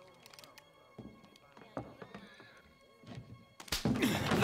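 A sudden loud thump near the end as a fight breaks out. Before it, faint tense film music with a few soft clicks and knocks.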